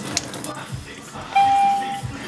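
A single electronic beep, one steady tone held for over half a second, starting about a second and a half in.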